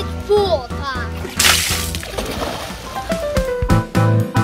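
A splash into a swimming pool about a second and a half in, over background music with a steady bass; a child's voice is heard briefly at the start.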